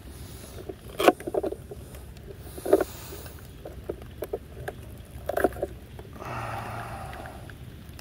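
Light knocks and clicks of hands handling an open RC boat hull and the electronics inside it, with a soft rushing noise for a second or so near the end.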